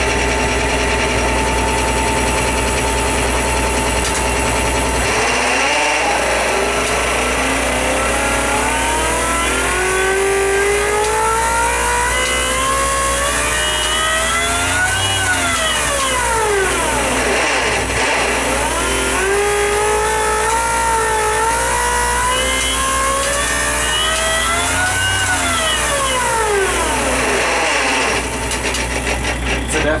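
A bank of spark plugs firing in a test rig on an MSD Mag 44 ignition, making a rapid buzz of sparks. The buzz holds a steady pitch for about five seconds, then twice climbs in pitch and falls back as the firing rate is swept up and down.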